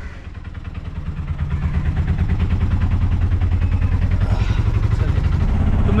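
Auto-rickshaw's small engine running with a rapid, even pulse, heard from inside the passenger cabin, getting louder over the first two seconds and then holding steady.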